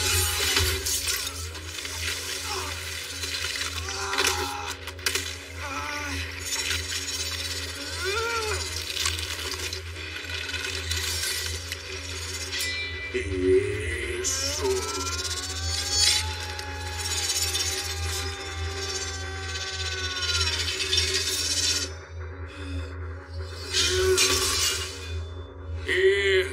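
Film sound design of metal shattering and clinking over dramatic music with a steady low rumble, typical of the effects that accompany a wing transformation.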